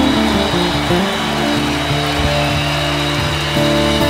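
Live band playing an instrumental passage, with sustained chords shifting over occasional drum strikes.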